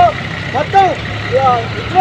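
A person singing a song in long arched phrases with held notes, over a steady low hum.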